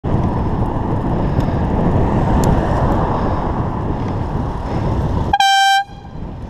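Wind and road noise rushing over a helmet-camera microphone while cycling, then about five seconds in a single short horn toot: one steady high tone lasting about half a second.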